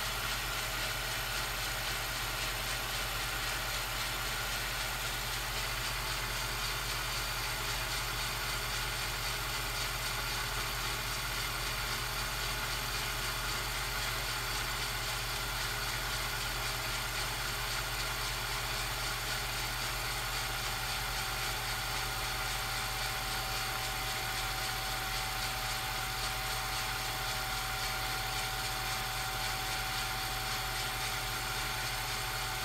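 Steady hiss with a constant electrical hum: the empty soundtrack of a silent 16mm home movie transferred to videotape.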